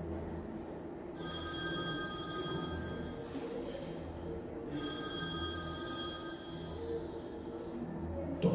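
An electronic ringing tone sounds twice, each ring about two to three seconds long with a short pause between, over a low pulsing drone.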